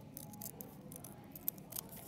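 Scissors cutting paper: a quick run of short snips, then two more near the end.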